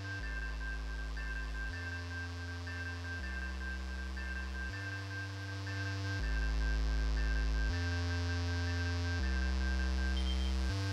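Electronic music played live on a modular synthesizer: a sustained bass note that steps to a new pitch about every one and a half seconds, under a short high blip repeating several times a second. It gets louder about six seconds in.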